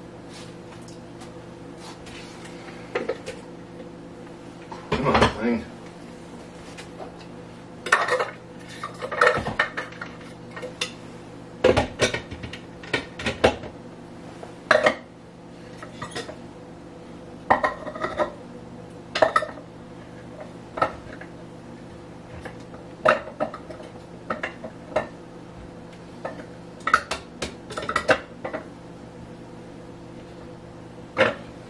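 Kitchenware handled off to the side: irregular clatters and clinks of dishes and utensils, about twenty in all and loudest around 5, 8 and 12 seconds in, over a steady low hum.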